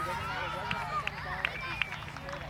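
Indistinct chatter of several voices at once, with three short sharp clicks in the second half.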